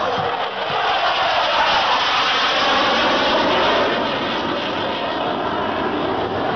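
Saab JAS 39 Gripen fighter jet engine roaring through a low fly-past, swelling to its loudest about two to four seconds in.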